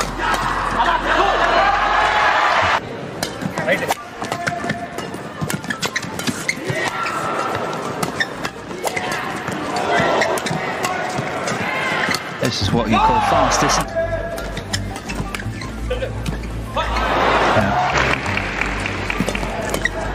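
Badminton doubles rally: rackets striking the shuttlecock in quick, sharp hits, with shoes squeaking on the court, over background music.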